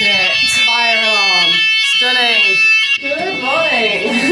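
Building fire alarm sounding a steady high-pitched tone, with a voice rising and falling over it for most of the time.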